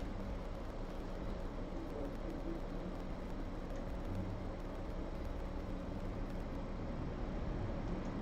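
Steady background hiss with a faint low hum, room tone picked up by an open desk microphone.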